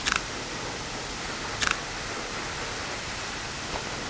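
Two camera shutter clicks about a second and a half apart, over the steady rush of a waterfall.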